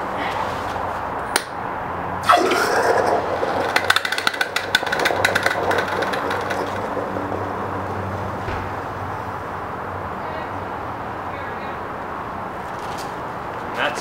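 Torch-heated steel go-kart axle plunged into ice water to quench and harden it: a sudden sizzle about two seconds in, crackling for a few seconds, then dying down to a softer, steady hiss.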